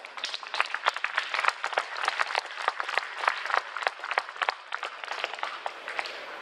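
Audience applauding: a crowd's dense, steady clapping that thins out near the end.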